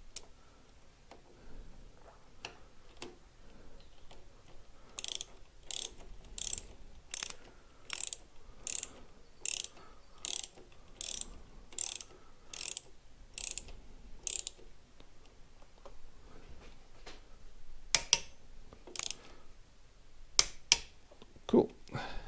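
Hand ratchet wrench clicking as the motorcycle's handlebar clamp bolts are tightened, in a steady series of about a click and a half a second for some ten seconds, then a few single clicks.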